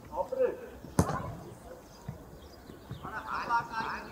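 A football kicked once on an artificial pitch, a sharp thud about a second in, amid brief shouts from players and coaches, with one longer high shout near the end.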